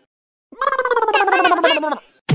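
A person's voice in one long wail, beginning about half a second in, its pitch falling steadily while it wavers rapidly.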